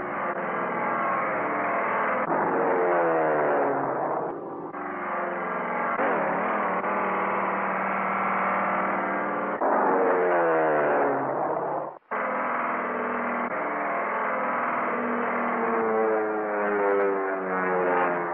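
Biplane engines droning, their pitch sliding down and back up in long glides as the planes dive and climb, heard through a dull, narrow old film soundtrack. The sound cuts out for an instant about twelve seconds in.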